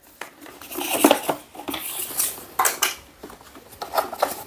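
Heavy power tools, among them red Hilti chipping and demolition hammers, knocking and clattering against each other in irregular clanks as they are shifted and lifted from a pile.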